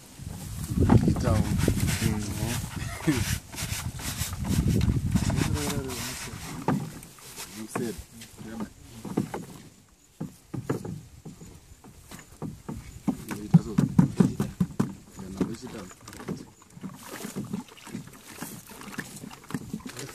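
Several people talking in bursts, with short scraping and splashing strokes between them as a hand brush scrubs the ribbed mat of a gold concentrator box and water runs off into a plastic tub.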